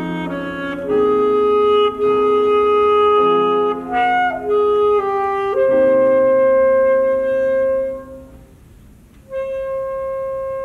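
Saxophone playing slow, long held notes in a classical piece, with a lower accompaniment sounding beneath. About eight seconds in the music fades nearly away, and a new held saxophone note begins just over a second later.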